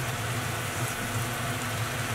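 Tomato chunks sizzling and bubbling in their juice and oil in a wok over a gas burner: a steady sizzle with a low hum underneath.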